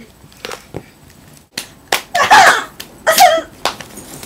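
Knocks and bumps from the camera being grabbed and handled, then two short, loud vocal yelps about a second apart in the second half.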